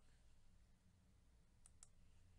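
Near silence with two faint computer mouse clicks in quick succession near the end.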